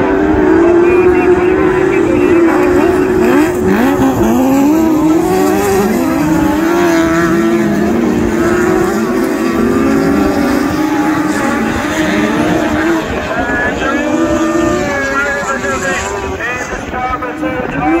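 Several autograss single-seater specials racing, their engines revving hard up and down through the bends and gear changes, with a few engine notes overlapping.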